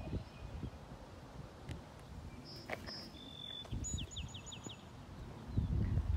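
A songbird singing outdoors: a couple of high held whistles, then a fast run of about five short down-slurred notes, over a low rumble of wind and handling noise and one soft knock.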